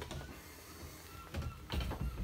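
Mostly quiet galley room tone with a few faint high tones. Near the end comes a soft bump as the boat's galley fridge door is swung shut.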